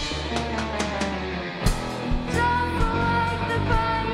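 A live rock band playing: drum kit with steady cymbal strikes, electric guitars, bass and keyboard. A held bass note fills the first second and a half, a heavy hit follows, and a voice comes back in singing long held notes in the second half.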